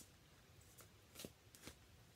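A deck of reading cards being shuffled by hand, heard faintly as a few soft card taps and riffles about half a second apart.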